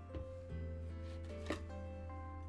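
Quiet background music with steady held notes, and light clicks of hard plastic CGC graded-card slabs being handled and swapped: a faint one just after the start and a sharper one about one and a half seconds in.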